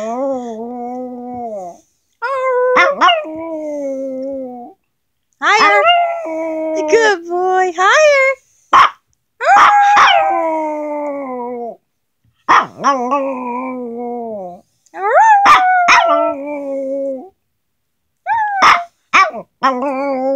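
Small long-haired dog howling: about seven drawn-out, wavering howls that slide down in pitch, with short pauses between them and a few short sharp barks in the gaps.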